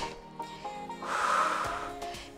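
Quiet background music with steady held notes; about a second in, a long exhaled breath into the microphone lasts nearly a second.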